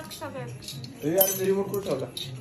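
Metal spoons clinking against stainless-steel plates and bowls, in a few short light clinks.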